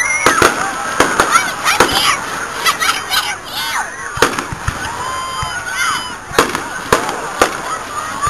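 Fireworks display: aerial shells bursting in a string of sharp bangs, about a dozen at uneven intervals.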